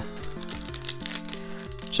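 Background lo-fi 8-bit music with slow held notes, and faint crinkling of a foil booster pack being handled.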